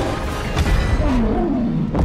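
Monster-film soundtrack: King Kong roaring over dramatic music and a deep rumble. The roar comes about a second in, its pitch rising and falling.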